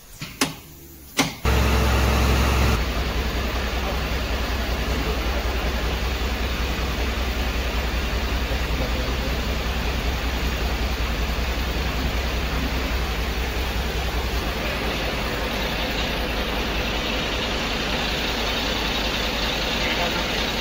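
An engine running steadily, a low hum with a fine even pulse. It starts abruptly about a second and a half in, loudest for the first second or so. A few sharp clicks come before it.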